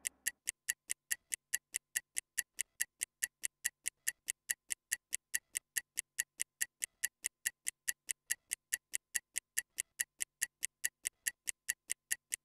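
Stopwatch ticking sound effect, a steady, even tick about four times a second, timing a 15-second recovery rest between exercises.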